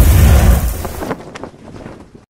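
Cinematic whoosh sound effect with a deep rumbling boom, loud at first and then fading away over about two seconds.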